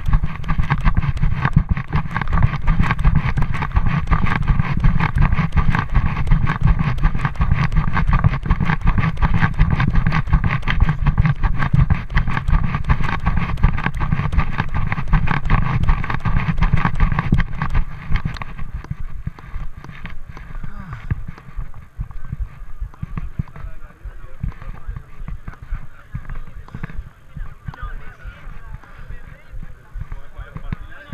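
Loud rumbling, rattling handling noise from a hand-carried camera moving across the plaza. About 18 seconds in it drops away and the chatter of a gathered crowd takes over.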